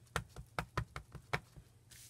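Quick light taps and clicks, about four a second, from a plastic stamp ink pad being handled and pressed on the table.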